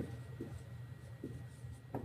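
Dry-erase marker writing on a whiteboard: a run of short, soft pen strokes as letters are formed, over a steady low room hum.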